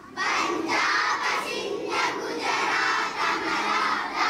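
A crowd of schoolchildren chanting loudly in unison, in phrases with short breaks between them, starting just after a soft piano-like tune ends.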